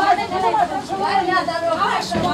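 Speech only: several people talking over one another, with a woman's high-pitched voice the loudest.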